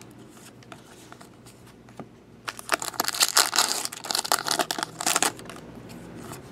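Trading cards handled and shuffled by hand. After a quiet start with one small click, a quick run of crisp rustling and flicking sounds comes in the second half as cards slide off the stack one after another.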